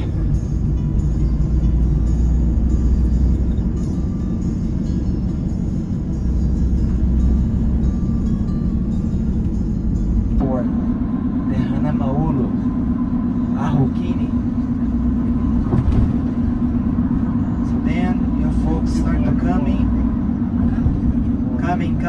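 Steady low rumble of road and engine noise inside a moving vehicle at highway speed, with a steadier hum joining about halfway through. Scattered voices are heard over it in the second half.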